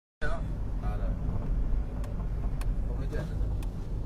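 Steady low rumble of a car's engine and tyres heard from inside the cabin while driving, with faint murmured voices and a few light clicks.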